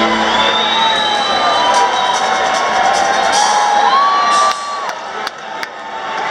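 Concert audience cheering and whooping, with a long high whistle early on, over live band music. The crowd noise drops off about four and a half seconds in, with a few sharp clicks after it.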